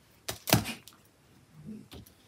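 Small craft scissors giving two sharp clicks close together, the second louder, followed by faint soft rustling near the end.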